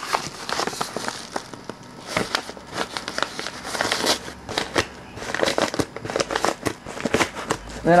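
A mailed package being handled and opened by hand: a busy run of paper and plastic crinkling, rustling and small clicks and snaps.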